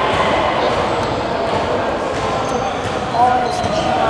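Steady background din of a busy basketball gym: balls bouncing on the court and people talking, with a nearby voice starting up near the end.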